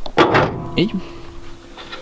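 Car bonnet being shut: one short, loud noise just after the start, followed by a faint steady tone.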